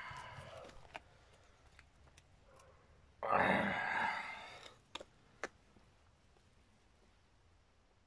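A man's long breathy exhale, like a sigh, about three seconds in, fading away; a couple of faint clicks follow.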